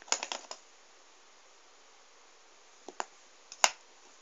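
Light handling clicks and taps: a quick rattle of small clicks at the start, then a few single clicks near the end, the last one the loudest.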